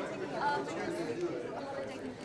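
Several voices talking over one another in a large room: indistinct chatter with no clear words.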